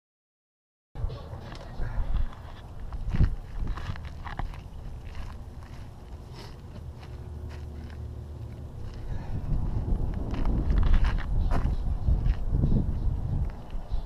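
Wind and handling noise on a GoPro's microphone as it is swung about on a telescopic pole: a steady low rumble with scattered knocks and rubs. It begins after about a second of silence and grows louder in the last few seconds.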